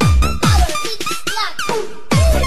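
Budots electronic dance remix: the booming kick beat, about two hits a second, drops out about half a second in. It leaves a short break of high electronic sounds sliding up and down in pitch, and the beat comes back right at the end.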